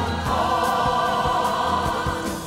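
A mixed ensemble of stage singers holding long notes together in full voice, with instrumental accompaniment underneath.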